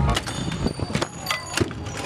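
The music cuts off, leaving the raw sound of a BMX bike on skatepark concrete: a handful of sharp knocks and clicks from the bike's tyres and frame.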